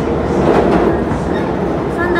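Limited express Thunderbird train running at speed, heard from inside the passenger car as it crosses a steel truss bridge: a steady rumble of wheels on rails.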